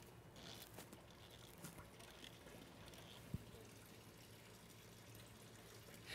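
Near silence with a faint trickle of used flush water draining from the radiator into a plastic drain pan, and one small tick about three seconds in.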